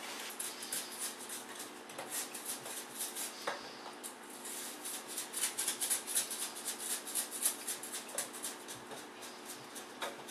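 Wet perlite refractory mix crunching as it is rammed down into a steel coffee can with a wooden stick: a quick, uneven run of gritty crunches and scrapes.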